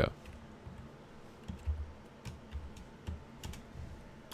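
Typing on a computer keyboard: a scattered run of individual keystrokes at an irregular pace.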